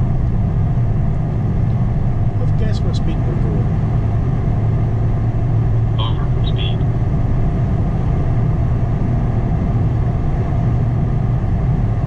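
Steady road noise inside a moving car's cabin: a deep rumble of tyres and engine at a constant cruising speed, with three short faint beeps about halfway through.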